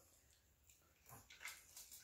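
Near silence for about a second, then a few faint soft clicks and squishes of fingers picking through seafood in a glass dish of sauce.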